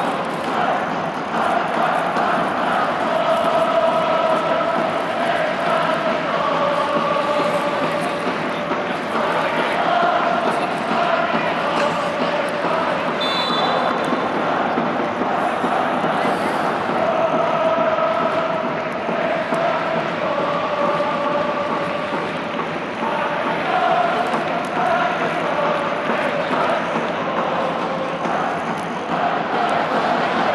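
Football crowd chanting in unison in a stadium, many voices singing one continuous chant whose pitch rises and falls, with a short high tone about thirteen seconds in.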